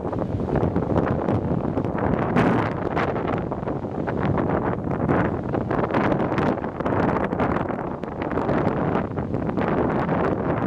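Strong wind buffeting the camera's microphone: a loud, steady rush with frequent short gusts.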